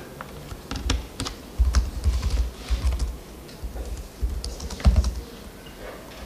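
Irregular typing and key clicks on a computer keyboard, with dull low thumps, the loudest about a second and a half in and again near the end.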